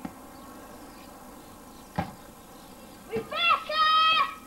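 A child's loud, drawn-out shout near the end, held on one high pitch. Before it there is a single sharp knock about two seconds in, against a steady outdoor background hiss.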